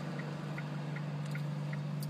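Steady low hum of a car idling at a standstill, with faint regular ticking about three times a second.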